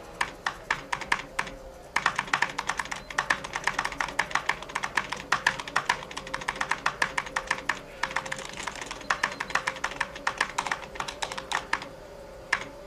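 Typing on an early Apple Macintosh keyboard: a few separate keystrokes, then from about two seconds in a fast, continuous run of key clicks until just before the end.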